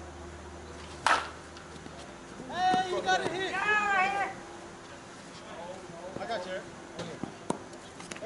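A bat hitting a slowpitch softball: one sharp crack about a second in, followed a moment later by players shouting and cheering.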